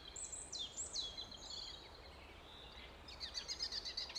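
Small birds singing: several high, falling whistled notes in the first two seconds, then a fast trill of rapid chirps near the end, over a faint low rumble of outdoor background.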